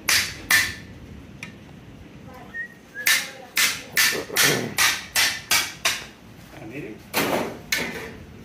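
A hammer striking the back of a machete, driving the blade through a large fish on a wooden chopping block: sharp knocks, two at the start, then a run of about eight at roughly two a second, and two more near the end.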